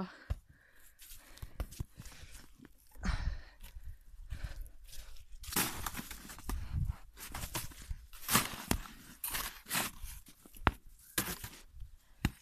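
Packed snow crunching and breaking up as a long-handled shovel digs and hacks into an igloo's snow pile, in irregular strokes, several of them louder from about the middle on.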